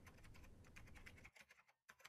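Faint, fast typing on a computer keyboard: a quick run of key clicks that thins out near the end.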